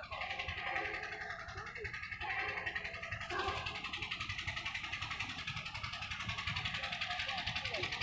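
Faint, indistinct voices in the background over a low rumble, with a short burst of noise about three seconds in.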